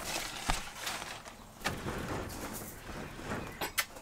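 A few knocks and rattles as a greenhouse's sliding door of metal frame and plastic panels is pulled open, with a sharper clatter near the end.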